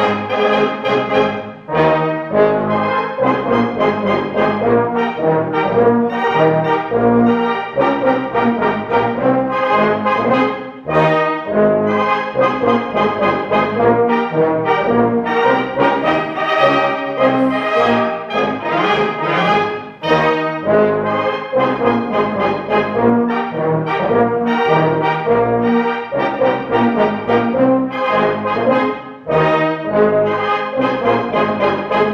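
Swabian brass band of flugelhorns, clarinets, tenor horns and tubas playing a folk-style dance tune live, with a steady beat and short breaks between phrases.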